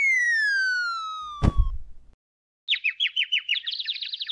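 Cartoon sound effects: a falling whistle that drops in pitch over about a second and a half, with a thud near its end. After a brief silence comes rapid bird-like twittering, the stock 'seeing stars' dizziness effect for a knocked-out character.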